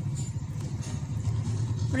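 A low, steady mechanical rumble with a fine, even pulse.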